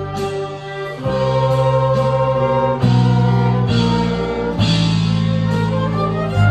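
Small ensemble of violins, flute, electric guitars and keyboard playing a slow piece, held chords over a deep sustained bass that moves to a new note roughly every second.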